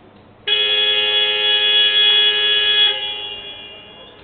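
Basketball arena's scoreboard buzzer sounding one long, steady tone, starting abruptly about half a second in, holding for about two and a half seconds, then dying away in the hall.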